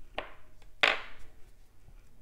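Beading thread pulled quickly through a seed bead on a hoop earring: two short swishes about two-thirds of a second apart, the second louder.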